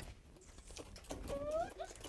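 Many quick, small kissing smacks from a group of children making mouse kisses, a scattered patter of lip clicks, with a faint short voice rising in pitch after the first second.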